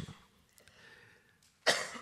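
A man's speech over a lectern microphone breaks off, leaving about a second and a half of faint room tone, and his voice starts again near the end.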